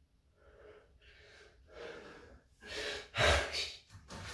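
A man breathing hard in quick, audible gasps from the strain of hanging from a pull-up bar, several breaths about every half second that grow louder, the loudest about three seconds in.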